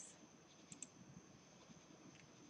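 Near silence with two faint clicks close together a little under a second in, from a computer mouse, over a faint steady high whine.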